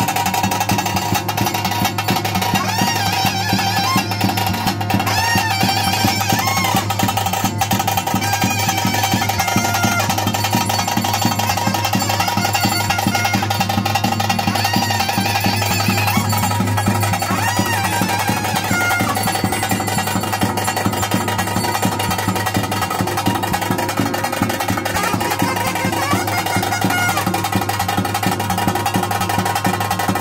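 Daiva kola ritual music: continuous drumming with a held, pitched melody line running over it.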